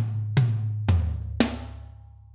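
Electronic drum kit playing a pop-punk drum fill: three hits about half a second apart with a low drum tone ringing beneath, the last one a cymbal crash that rings out and fades.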